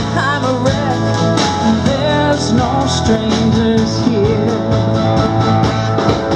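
Live country-rock band playing: electric and acoustic guitars, drums keeping a steady beat and sung vocals, heard from among the audience in the hall.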